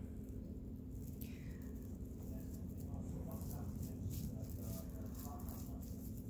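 Faint crinkling and ticking of plastic-bag yarn (plarn) and a crochet hook as stitches are worked, over a low steady room hum.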